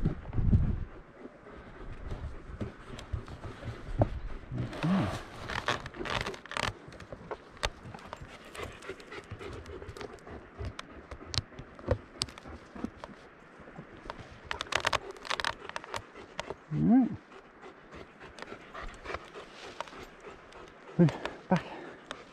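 A German Shepherd dog panting hard, with a few short voiced sounds rising and falling in between: about 5 seconds in, again around 17 seconds and near the end.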